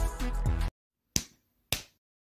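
Background music cuts off suddenly, followed by two sharp knock-like sound effects about half a second apart, the noise that makes the characters ask what it was.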